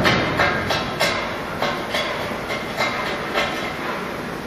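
Foundry clatter while molten iron is poured from a crane-hung steel ladle into billet moulds: irregular sharp metallic knocks, about two or three a second, over a steady rumbling noise.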